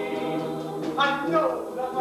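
Live singing from a stage musical: several voices in harmony holding long notes, with a new phrase starting about a second in.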